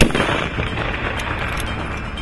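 A single rifle shot from a scoped sniper rifle right at the start, a sharp crack whose report rolls away over about a second. Faint background music runs underneath.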